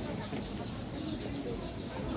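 Street ambience: a steady background hum with faint, wavering voices.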